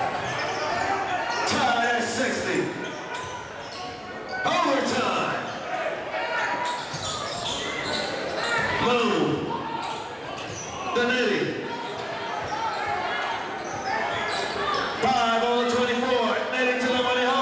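A basketball being dribbled on a hardwood gym floor, with crowd and player voices echoing in the hall that grow louder near the end.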